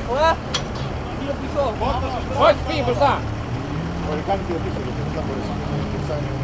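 Turbo-diesel engine of an off-road 1964 Unimog idling steadily, with voices calling out over it several times.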